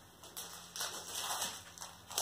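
Faint rustling and crinkling of plastic-wrapped craft packaging being handled, with a few light ticks.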